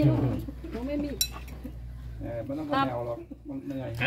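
People talking, with a bird calling in the background.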